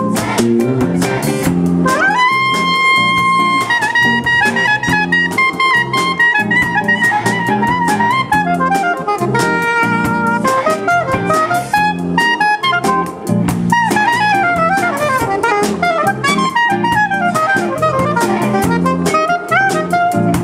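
Soprano saxophone playing a jazz solo over a backing with drums. A note is scooped up and held about two seconds in, then the solo moves into quick runs of notes, many of them falling, in the second half.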